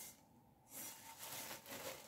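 Faint crinkling of clear plastic wrap as the rice cooker's inner pot, still in its film, is handled, starting a little way in.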